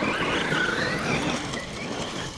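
Traxxas Maxx V2 RC monster truck driving, its Castle 1520 brushless motor and drivetrain whining with a pitch that wavers up and down with the throttle, over a steady hiss.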